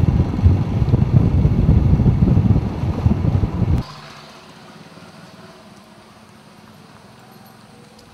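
Loud low rumble with wind buffeting the microphone, like filming from a moving vehicle. It cuts off abruptly about four seconds in, leaving a faint, steady outdoor background.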